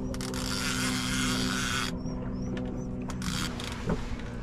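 Fishing reel working against a hooked catfish: a rasping mechanical clicking for about the first two seconds, then scattered clicks. A steady low hum runs underneath.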